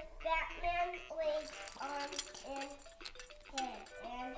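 Light clicks and clinks of hard plastic baby toys being grabbed and knocked together, a few sharp ones in the second half, over voices in the room.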